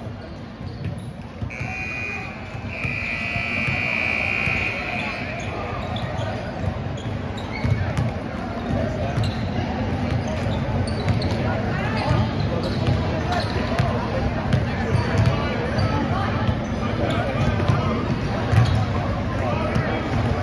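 A basketball bouncing on a hardwood gym floor, repeated thuds from about eight seconds in, over background voices in the gym. About two seconds in, a steady high buzzer-like tone sounds for roughly three seconds with a brief break.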